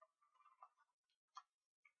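Near silence with a few faint clicks, the clearest about one and a half seconds in.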